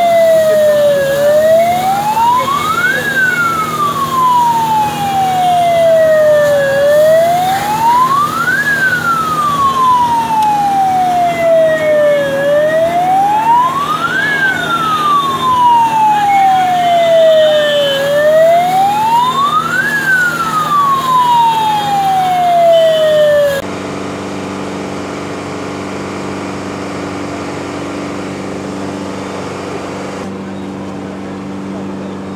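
Fire engine siren wailing, its pitch rising over about two seconds and falling more slowly, repeating roughly every six seconds. About three-quarters of the way through it cuts off abruptly, leaving a quieter steady hum.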